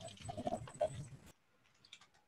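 Background noise from open video-call microphones, with faint short animal-like sounds in it, cutting off suddenly just over a second in as the microphones are muted.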